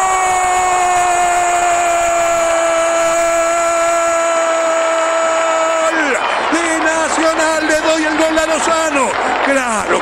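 Radio football commentator's goal cry: one long held shout of "gol" lasting about six seconds, its pitch sinking slightly, then fast excited shouting.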